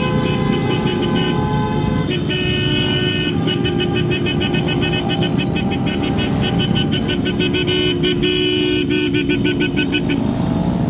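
Several motorcycle horns honking together over the running engines of a motorcycle convoy: long held blasts for the first couple of seconds, then rapid, repeated beeping from about three seconds in.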